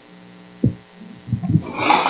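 Steady electrical mains hum in the microphone line, with a few dull low knocks, from the handheld microphone being handled.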